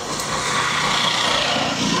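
A road vehicle passing by: a steady hiss of engine and tyre noise that swells and then fades away.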